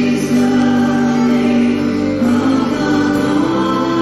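A choir sings the chorus of a contemporary worship song in long, held notes.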